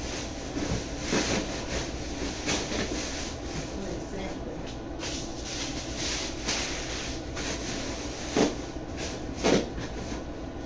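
Rummaging in a cardboard shipping box: rustling and handling of cardboard and packing, with several sharp knocks, the loudest two near the end.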